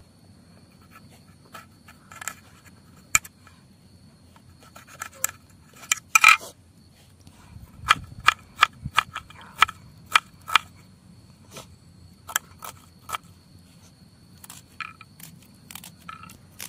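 Small knife cutting and chopping vegetables on a stone slab: sharp irregular taps and clicks, with a cluster of loud ones about six seconds in and a run of about two a second between eight and eleven seconds. A steady high insect call continues underneath.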